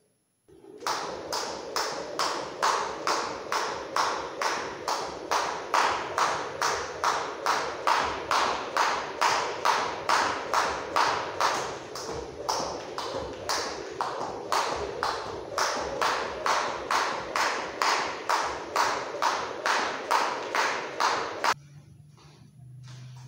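A skipping rope striking a padded floor mat as a man jumps, with his feet landing: sharp taps at about two a second. The rhythm breaks briefly a couple of times about halfway through and stops suddenly just before the end.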